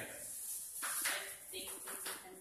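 Quiet talk and murmuring from a small group of people sitting together, with no single loud event.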